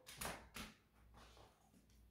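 Faint, brief rustle and tap of a deck of oracle cards being handled, twice in the first half-second or so, then near silence.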